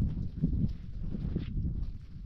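Soft, irregular thumps and cloth rustling as hands spread and pat down a woven cloth laid on a rug on the ground, over a low rumble.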